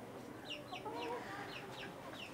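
Faint bird chirps in the background: a quick run of short, high calls, about three a second.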